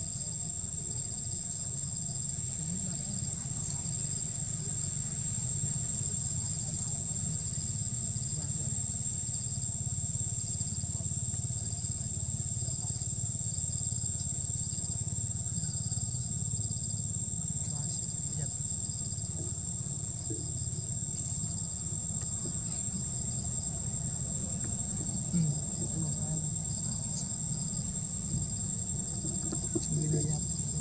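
Forest insects singing steadily: one continuous high-pitched tone with a rhythmic pulsing chirp beneath it, over a low steady rumble.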